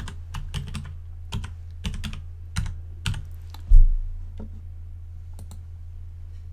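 Computer keyboard keys typed in short, irregular runs, with one dull thump about two-thirds of the way in that is louder than the keystrokes. A steady low hum sits underneath.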